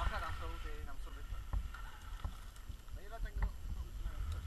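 Low wind rumble on the microphone, with two short bursts of a person's voice, one near the start and one about three seconds in.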